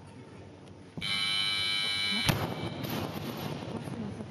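A steady electronic buzzer, the referees' down signal for the snatch, sounds for about a second, then a loaded barbell is dropped onto the lifting platform with one heavy bang that echoes through the hall.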